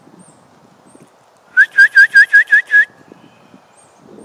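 A bird calling: a rapid run of seven loud, even notes, about six a second, lasting just over a second, a little past the middle.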